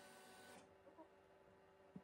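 Near silence with the faint steady hum of a Sovol SV08 3D printer as its toolhead moves over the bed for an adaptive bed mesh, with a soft tick about a second in.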